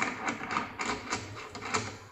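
Metal clicking and rattling from the lock fitting of a smart manhole cover as it is worked by hand: a quick, irregular run of about seven sharp clicks, the first the loudest.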